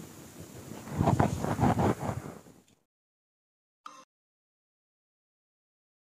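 Rough rustling and handling noise close to the microphone, loudest for about a second and a half, then cut off suddenly to silence, with one brief blip about four seconds in.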